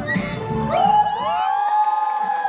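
A crowd of children's voices rising together into one long held shout about a second in.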